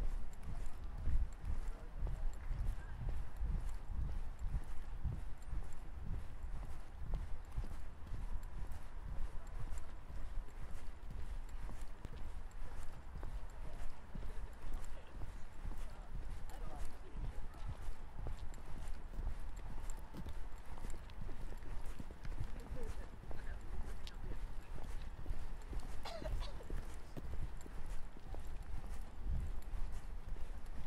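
Busy shopping-centre concourse ambience: many footsteps knocking on a hard floor and a murmur of voices over a steady low rumble. A brief high, pitch-bending sound comes near the end.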